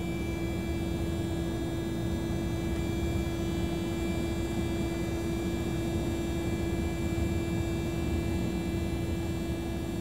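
Steady drone of a Douglas DC-3 in flight heard from inside the cockpit, with one engine running and an even hum over a low rumble. The left engine is shut down and its propeller feathered, so the aircraft is flying on the right engine alone.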